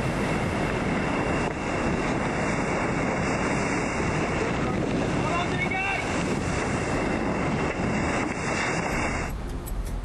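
Loud, steady wind buffeting the microphone, with rushing water and spray from an ocean racing yacht driving through heavy seas.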